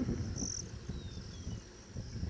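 An insect trilling steadily at a high pitch, with a louder pulse about half a second in, over a low, uneven rumble.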